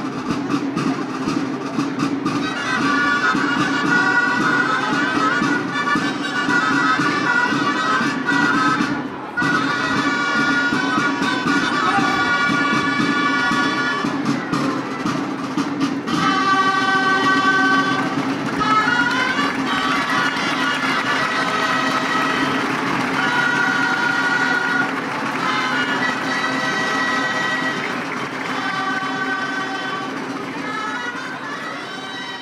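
Gralles, Catalan double-reed shawms, playing a melody of held reedy notes that shift and slide in pitch, with a crowd noise behind.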